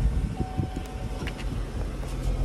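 Low steady rumble and hum inside a car's cabin. A few soft low thumps come about half a second in, and a brief click a little past halfway.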